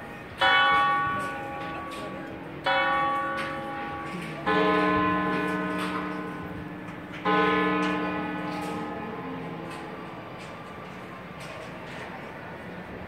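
Cathedral tower bells striking four times. A higher bell strikes twice about two seconds apart, then a deeper bell strikes twice, each stroke ringing on and slowly dying away.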